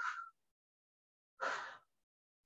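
Near silence, broken about one and a half seconds in by one short, breathy exhale from a man straining to hold a plank while kicking one leg up.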